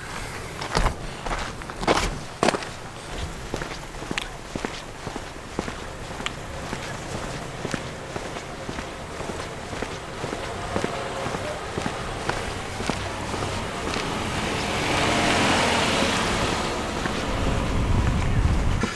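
Footsteps on asphalt, walking at a steady pace. A rushing noise swells and fades a little before the end.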